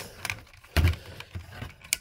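Hard plastic parts of a Power Rangers Wild Force falcon Zord toy clicking and knocking as it is handled, with one duller knock a little under a second in.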